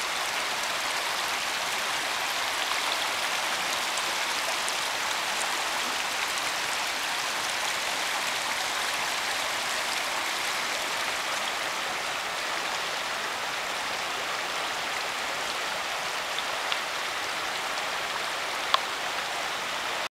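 Fast-flowing, muddy creek rushing over riffles: a steady, even rush of water. A single sharp click is heard near the end.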